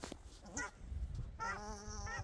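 A pair of wild ducks calling as they fly overhead: a faint call about half a second in, then one long, steady call starting about one and a half seconds in.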